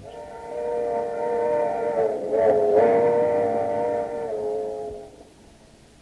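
Radio sound effect of a train: a chord-like train whistle held for about four seconds, sagging briefly in pitch midway, over the low rumble of the moving train, then fading out about five seconds in.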